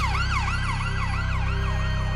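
Ambulance siren on fast yelp, its pitch sweeping up and down about four times a second, fading out near the end.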